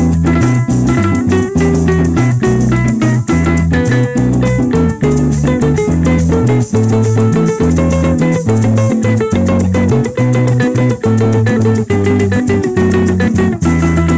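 Instrumental break of Colombian llanera (joropo) music: a strummed cuatro and guitar keep an even, quick rhythm over a stepping electric bass line, with maracas shaking steadily.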